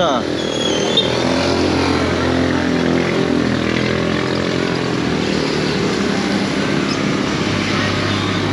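A motor vehicle engine running steadily, its pitch drifting slowly down.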